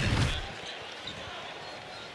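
A broadcast graphic's whoosh sweeps through and fades within the first half second. Under it and after it runs a faint, steady hum of arena ambience.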